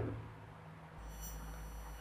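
Faint room tone in a pause between speech, with a steady low hum and a faint high whine coming in about a second in.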